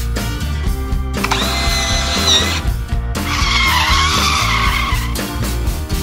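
Cartoon sound effects over upbeat background music: a high, steady squealing tone that wavers as it ends, then a rougher wavering screech for about two seconds as the tow engine's line drags the stuck engine.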